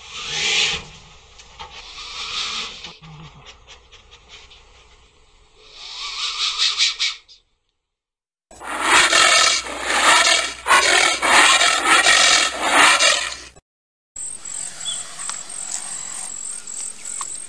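Anteater sounds: noisy, breathy huffs in irregular bursts, from several short recordings joined with brief gaps of silence, the loudest run coming in the middle. The last two seconds are a quieter recording with a steady high insect drone behind it.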